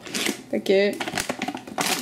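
Stiff plastic food bag being handled, giving a quick run of small crinkles and clicks for almost a second, starting about a second in.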